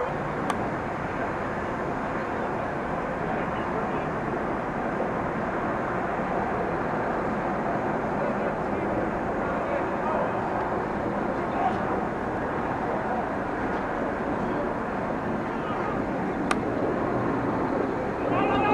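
Open-air ambience at a rugby match: a steady rumbling noise with faint, indistinct shouting from players on the field.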